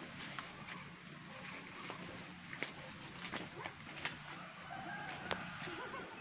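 Rural outdoor ambience with a chicken clucking in the background, its call wavering near the end, and scattered sharp crackles of steps on dry leaves and twigs.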